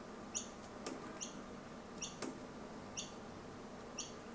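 A bird chirping faintly, a short high call repeated about once a second.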